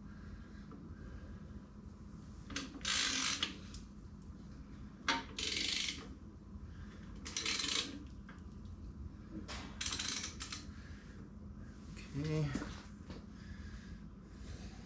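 Metal tools and engine parts being handled on a bench and engine block: about five short bursts of rattling and scraping, with a sharp click about five seconds in.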